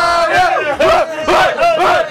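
Several men chanting and shouting together in a repeated call that rises and falls about twice a second, in a cramped elevator.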